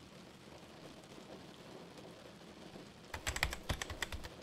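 Fast typing on a computer keyboard: a quick run of clicks starting about three seconds in, over a faint steady hiss.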